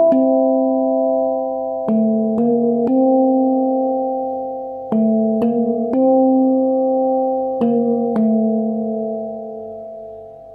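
Handpan tuned to D minor (Kurd), played slowly by hand. A note is struck at the start, then two runs of three rising notes (A3, B-flat3, C4), then B-flat3 and A3. Each note rings on into the next, and the last one fades out.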